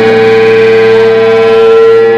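Electric guitar and electric bass holding one loud sustained chord that rings steadily with no drum hits, one strong note standing out above the rest.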